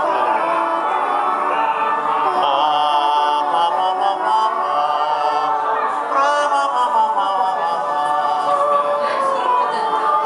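Several male voices singing a cappella in overlapping held notes that shift in pitch, imitating trumpets with a nasal, brassy tone made with hands cupped over the mouth and nose.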